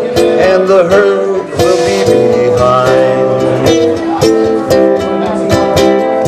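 Ukulele strummed in a steady rhythm: an instrumental passage between sung lines of a song.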